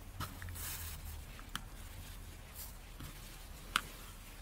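Faint rustling of hands handling a chunky milk-cotton yarn hat and pulling the yarn tight to gather the crown closed, with two small clicks, one about a second and a half in and one near the end.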